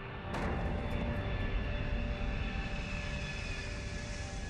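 Wartime air-raid sound effects: a sudden blast a moment in, then a continuous low rumble with droning aircraft engines.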